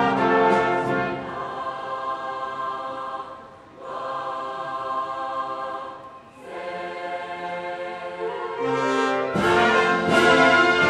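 Live school wind band playing a soft, sustained passage of held chords in phrases. The sound dips briefly twice between phrases and swells louder near the end as the full band comes in.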